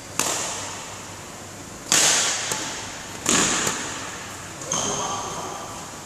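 Badminton shuttlecocks struck hard with rackets in a feeding drill: four sharp hits about a second and a half apart, each ringing on in the hall's echo.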